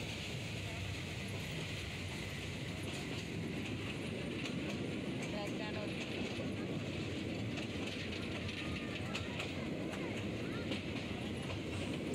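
A passenger train running steadily along the track, heard from on board: a constant rumble of wheels and carriage, with faint clicks in the middle.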